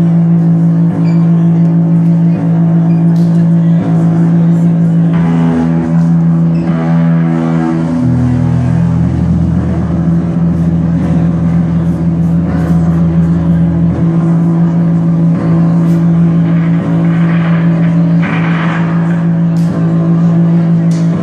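A loud live psychedelic stoner-rock band: heavily distorted electric guitars and bass hold one long droning note, with the bass line moving lower for several seconds in the middle.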